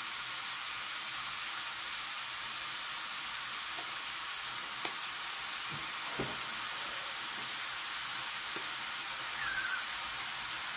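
Chopped bell pepper frying in oil in a stainless steel skillet under a block of raw ground beef: a steady sizzle, with a couple of faint ticks about halfway through.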